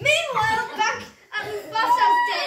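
Children's high-pitched voices calling out as they play, with a short pause a little past one second in.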